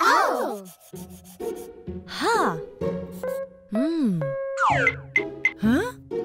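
Cartoon sound effects over light children's background music: a run of springy, boing-like pitch glides about every second, with a scratchy rubbing sound of crayon scribbling on paper.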